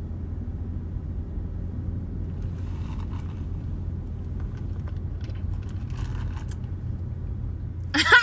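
Steady low rumble of a parked car's idling engine, heard from inside the cabin.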